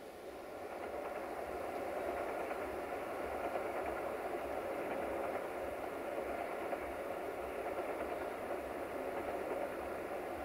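Diesel locomotive running as a train approaches through the station. The sound swells over the first two seconds, then holds steady, with a low pulsing throb underneath.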